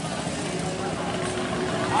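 Steady road traffic noise with a faint, even engine hum from a vehicle running nearby.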